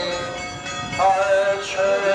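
Voices singing a slow religious hymn in long held notes, a new phrase starting about a second in.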